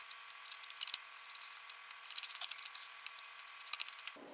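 Metal spoon scraping and clicking irregularly against a small plastic measuring cup while mixing peanut butter and powdered sugar into a stiff paste.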